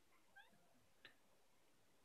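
Near silence: room tone, with a faint brief rising chirp about half a second in and a faint tick about a second in.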